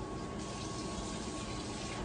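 Steady, even hiss with a faint thin whine running through it.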